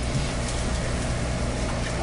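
Room tone: a steady low hum with a faint hiss underneath, no voices.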